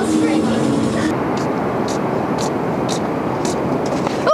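Steady rumbling noise of street traffic, with faint high ticks about twice a second after the first second.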